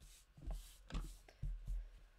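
Hands handling card stock on a craft mat: a few soft knocks and light rustling as a card is set down and shifted on the table.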